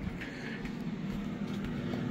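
Steady low hum of a countertop air fryer's fan running while it cooks.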